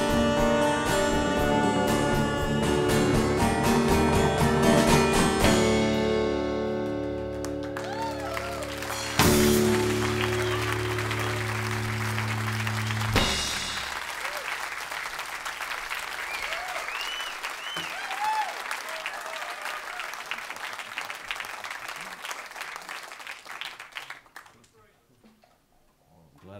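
Lap-played slide guitar and voice closing a blues song, ending on a final chord struck about nine seconds in that rings for a few seconds. Audience applause and cheering with a few whistles rise under it, then fade away near the end.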